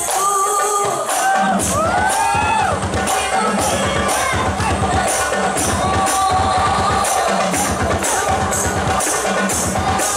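Rebana ensemble performing: women's voices singing into microphones over rebana frame drums and jingles beating a steady rhythm. The drums drop out briefly at the start and come back in about a second in.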